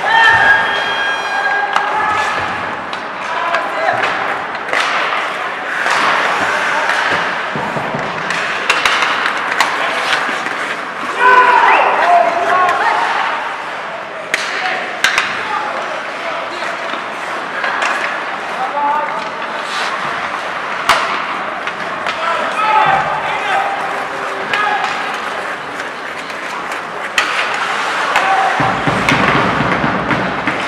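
Ice hockey play in a near-empty rink: players shouting short calls, with frequent sharp clacks and thuds of sticks, puck and bodies against the boards.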